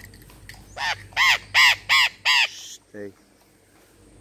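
Parrot calling from the trees: five loud, harsh calls in quick succession, each rising and falling in pitch, followed by a short lower call near the end.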